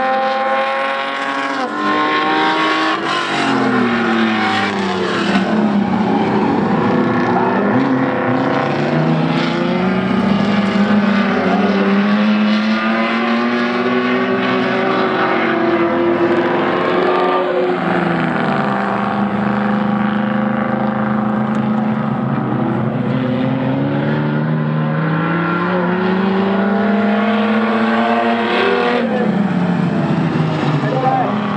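Several modified dirt-track race cars' engines running hard together, each rising and falling in pitch again and again as the drivers rev, lift and change gear through the corners and straights, with the engines overlapping throughout.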